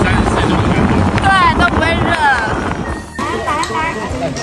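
Wind buffeting the microphone of a phone carried on a moving open-air electric surrey, with voices or singing over it. About three seconds in it stops abruptly and gives way to a quieter outdoor background.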